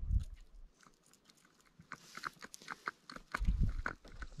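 A fishing reel being cranked as a walleye is brought in beside a canoe: a run of irregular small clicks and rattles, with low thumps at the start and in the last second.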